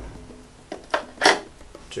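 D-cell batteries knocking and clinking as they are drawn out of a lantern's battery compartment and set down on a table: a few short knocks, the loudest a little past midway, over quiet background music.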